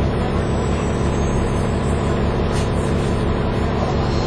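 Diesel engine of a Dennis Trident 2 double-decker bus running steadily, heard from inside the passenger saloon along with a low, even hum and road noise.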